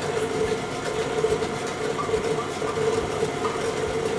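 KitchenAid tilt-head stand mixer running with a steady motor hum while mixing banana batter at low speed.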